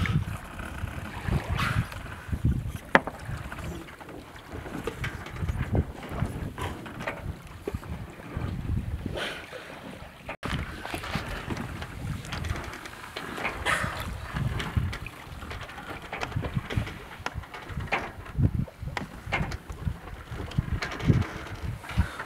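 Wind buffeting the microphone over water sloshing along a sailboat's hull, rising and falling in uneven gusts with scattered small splashes. There is a very brief dropout about ten seconds in.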